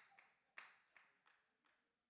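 Near silence: room tone with a few faint breathy noises.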